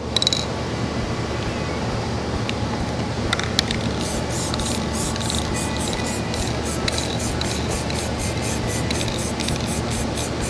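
Aerosol rattle can of UV-curing primer spraying the final coat onto a car panel: a steady hiss with no break.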